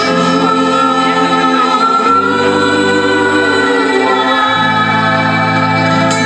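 A worship song sung live by a group of singers with acoustic guitar and band accompaniment, the voices holding long notes.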